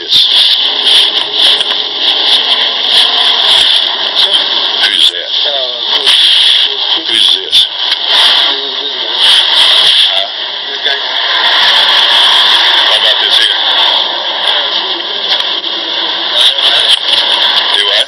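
A loud, steady radio-style hiss with muffled, indistinct voices in it, as heard over a police wireless microphone transmission.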